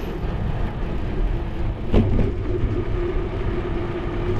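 Bicycle ride on rough asphalt: a steady rolling rumble of tyres and wind on the action camera's microphone, with one sharp knock about halfway through as the bike jolts over a bump.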